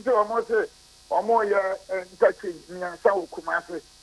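Speech only: a man talking in narrow, phone-line sound with a faint electrical buzz behind it, pausing briefly about a second in.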